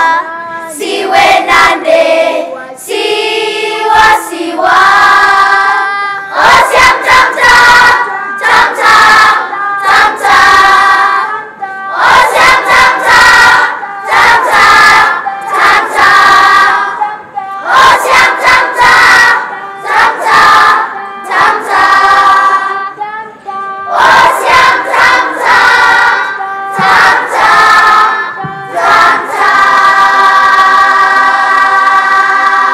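A children's choir singing together in unison, in short phrases with brief pauses between them.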